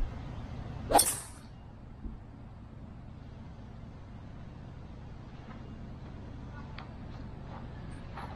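A golf driver striking an RZN MS Tour golf ball off the tee about a second in: one short, sharp impact, followed by faint steady background noise.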